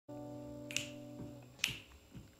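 Finger snaps keeping a slow beat, two about a second apart, over a held chord that fades away after about a second and a half, as a song begins.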